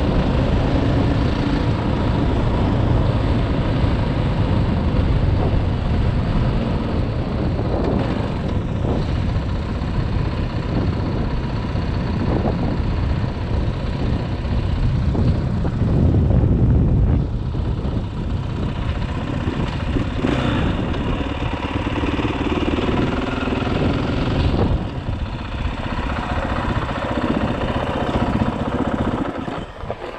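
Single-cylinder four-stroke engine of a 2018 KTM 500 EXC-F dirt bike running while riding, then easing off and idling as the bike slows to a stop near the end.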